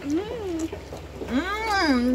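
A woman's appreciative "mmm" hums through a mouthful of food, twice: a short one at the start and a longer one in the second half, each rising and then falling in pitch, savouring the taste.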